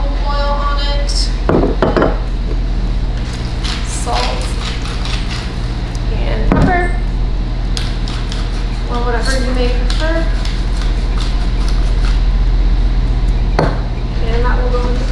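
Steady low hum running throughout, with a few short stretches of indistinct voice and several sharp knocks.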